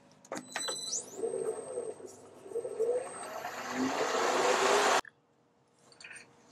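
Wood lathe switched on and brought back up to speed: a whine rising in pitch about a second in, then the spinning jaws running with a rushing noise that grows louder before cutting off suddenly about five seconds in.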